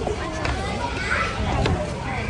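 Several people talking over one another in lively chatter, with two short clicks.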